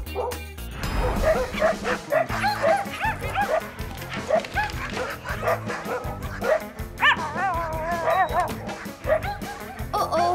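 Cartoon puppies yipping and barking again and again over cheerful background music, with one longer wavering call about seven seconds in.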